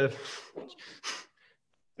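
A person's breathy exhale between words, followed by two or three short, faint breathy puffs like a stifled laugh.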